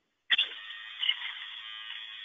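A steady electronic buzz on the audio line that starts abruptly, with a click, about a third of a second in. It is thin and high, with no low end.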